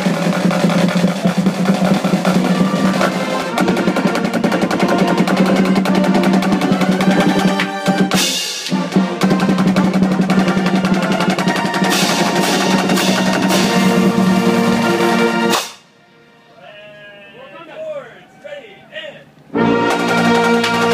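A small marching-band brass section with sousaphones and trumpets, backed by snare drums and cymbals, playing loud held chords. It breaks off sharply about three-quarters of the way through, a few voices follow, and the band strikes up again just before the end.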